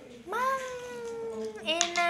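A baby's long drawn-out vocal call, its pitch rising at the onset and then slowly falling, followed near the end by a second, lower call.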